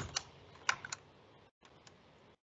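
A few short, sharp computer clicks as the on-screen audiometer levels are stepped up: one just after the start, a quick cluster of three a little later, then two fainter ones near the end.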